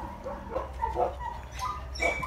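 A husky-mix dog making several short, soft vocal sounds.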